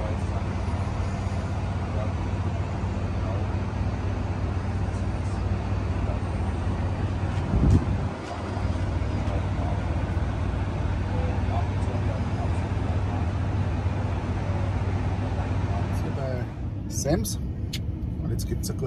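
Steady low drone of idling semi-truck diesel engines with faint voices over it, and one short low thump about eight seconds in. Near the end the drone drops away, giving way to the quieter sound inside a car.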